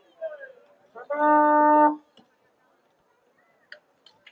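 A single steady horn blast, one held note a little under a second long, about a second in. A short voice call comes just before it.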